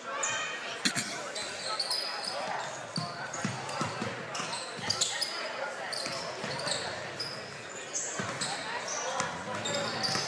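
Basketball dribbled on a hardwood gym floor, with short high sneaker squeaks and background crowd voices, all echoing in the gymnasium.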